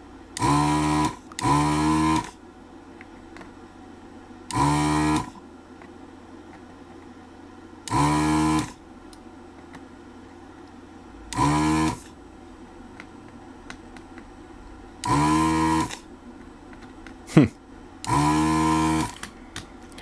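Vacuum pump of a ZD-915 desoldering station buzzing in seven short bursts, each under a second, as the gun's trigger is pressed to suck molten solder off the pins of a socket. The pump is quite noisy, and a steady low hum runs underneath.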